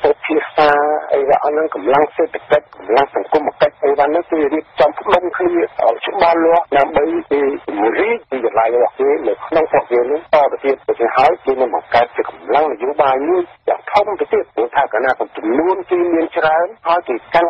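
A voice speaking without pause in Khmer, with the thin, narrow sound of a radio news broadcast.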